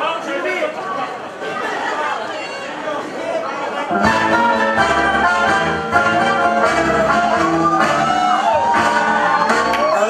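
Audience chatter, then about four seconds in a swing song starts suddenly and runs on, with a stepping bass line and a singer.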